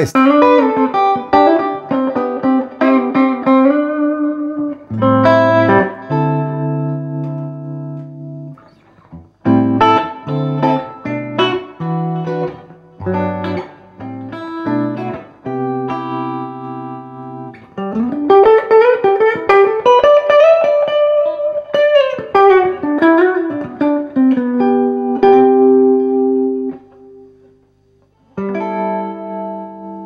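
Gibson ES-335 electric guitar played clean, with no overdrive, through a Fishman Loudbox Mini 60-watt solid-state acoustic amplifier. It plays plucked melodic phrases over held chords, with notes sliding up in pitch a little past halfway and a brief pause near the end.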